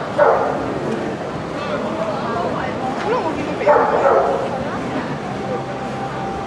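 A dog barking in short bursts, twice: once right at the start and again about four seconds in, over a steady murmur of voices.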